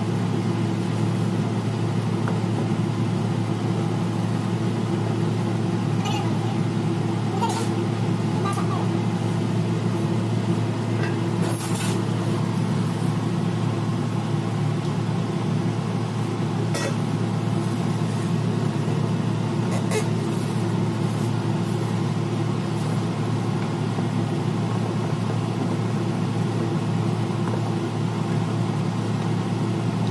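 A steady low mechanical hum that does not change, with a few faint clicks and taps scattered through it.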